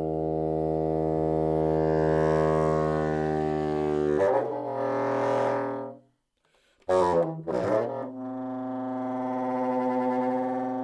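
Contemporary chamber orchestra music: a long held chord of wind instruments that swells and thins. It breaks off into a short silence about six seconds in, followed by two short loud accented chords and another sustained held chord.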